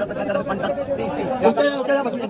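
Several men's voices talking at once: crowd chatter around an auction of boxed apricots.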